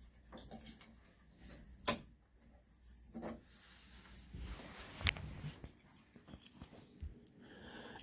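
Light handling sounds as a screw is backed out and a metal roller bracket is pulled off the top of a wooden sliding closet door: soft rubbing and scraping, with a sharp click about two seconds in and another about five seconds in.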